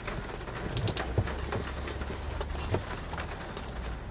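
A man chewing a big mouthful of burger close to the microphone: scattered wet mouth clicks and smacks. Under it runs a low steady rumble.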